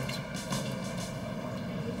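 Steady low drone of the documentary's background music bed, with no speech over it.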